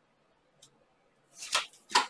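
Tarot cards being handled: a faint tick, then a short swish of cards about a second and a half in, followed by a sharp snap near the end.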